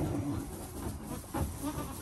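A doe goat and her newborn kids moving about in straw bedding, with a couple of soft, short goat calls and a single knock about one and a half seconds in.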